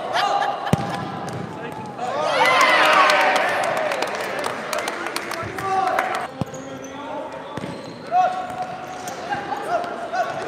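Futsal match sounds on a hard indoor court: players and onlookers shouting, loudest in a burst of many voices about two seconds in, with sharp thuds of the ball being kicked and bouncing on the floor.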